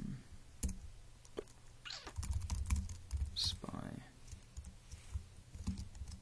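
Keystrokes on a computer keyboard: irregular clicks of a line of code being typed, in short runs with pauses between.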